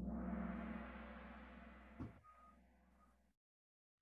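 Kahoot quiz's time-up sound effect as the answer results are revealed: a sudden gong-like hit that rings and fades for about three seconds, with a smaller hit about two seconds in, then stops abruptly.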